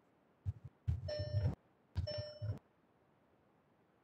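Two short ringing tones about a second apart, each held for about half a second over low muffled thumps.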